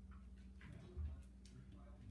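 Faint ticks and scuffles of two Havanese puppies playing on a vinyl floor, with a soft thump about a second in, over a low steady hum.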